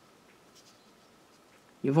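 Faint scratchy rubbing of a 1.75 mm crochet hook pulling thread through stitches, over low room hiss. A woman's voice starts near the end.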